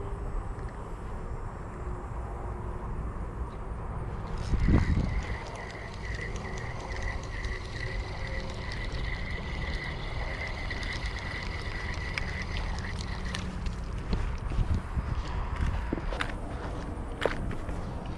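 Spinning reel being cranked to reel in line, a steady whir with fine clicking that starts about four seconds in and stops about four seconds before the end. Low wind rumble on the microphone runs underneath, with a brief thump just after the reeling starts.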